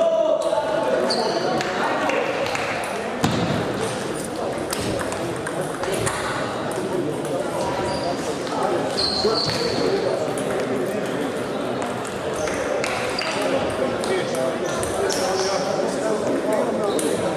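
Table tennis balls clicking off bats and tables, irregular and overlapping from several games at once, over a steady murmur of voices in a large sports hall.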